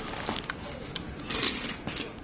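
Fingernails picking at the edge of a thin plastic masking film on a phone display: a few small clicks and crackles early on, then a short crinkling rustle about a second and a half in.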